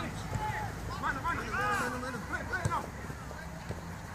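Distant shouting voices during a football match: a few short rising-and-falling calls between one and two seconds in, over a steady low outdoor rumble.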